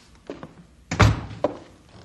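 Sound-effect knocks from an old radio drama: a few separate, uneven thuds, the loudest about a second in with a heavy low thump.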